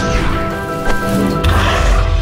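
Dramatic film score with steady held notes, overlaid by sound-effect whooshes: one as it begins and a second about one and a half seconds in, joined by a deep rumble.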